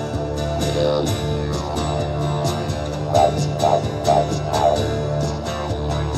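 Didgeridoo drone played together with a strummed acoustic guitar, an instrumental break with no singing. About halfway through, the didgeridoo's tone swells in four rhythmic pulses about half a second apart over the steady guitar strumming.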